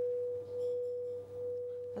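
An 8-inch frosted crystal singing bowl ringing with a single steady, pure tone that swells and dips in slow waves.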